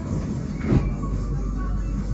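Bangkok BTS Skytrain car heard from inside the cabin: a steady low rumble, with one short knock about three-quarters of a second in.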